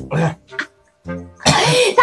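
A person making short coughing, throat-clearing vocal bursts, a few small ones and then a louder, rougher one in the last half second, over faint background music.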